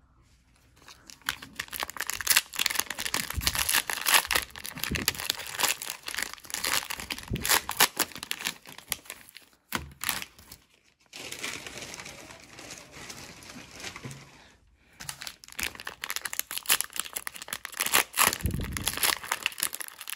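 Plastic wrappers of 2020 Panini Mosaic football-card cello packs crinkling and tearing as they are handled and opened, in crackly bursts with a few short pauses.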